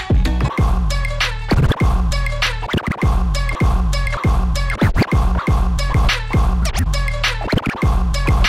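DJ scratching records on turntables over a hip hop beat with a heavy bass line, the sample chopped in quick rhythmic cuts and scratches.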